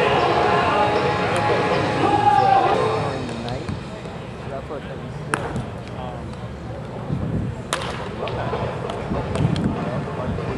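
Two sharp cracks of a wooden baseball bat hitting pitched balls in batting practice, a little over two seconds apart, the second the louder. Background voices of players talk in the first few seconds.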